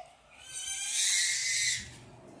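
Interior door being pushed open, a hissing sweep with a faint creak lasting about a second and a half.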